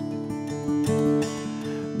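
Solo acoustic guitar strumming chords softly, each stroke left to ring.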